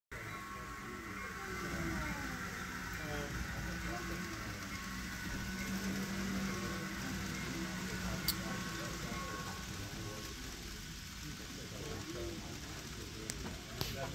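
Indistinct background voices and room noise while an N scale model passenger train runs along the layout, with a sharp click about eight seconds in.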